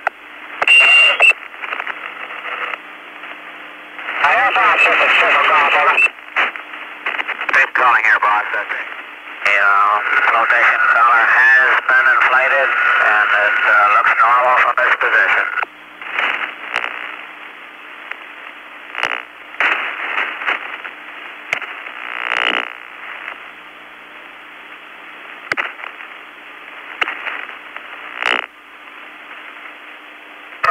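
Recovery-force radio channel hissing with a steady low hum, broken by stretches of garbled voice transmission about four seconds and ten seconds in, and by scattered short clicks.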